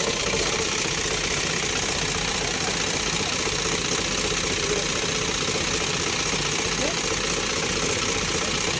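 Truck engine idling steadily with its cab tilted and the engine bay open. It is being run so that the freshly refilled coolant circulates through the repaired radiator.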